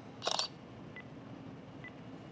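The OrCam MyEye's clip-on camera makes a short shutter-click sound about a quarter second in as it captures the text of a held-up card. It is followed by two faint, brief high beeps about a second apart while the device processes the text before reading it aloud.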